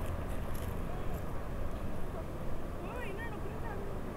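Faint, indistinct voices over a steady low rumble of noise on the microphone.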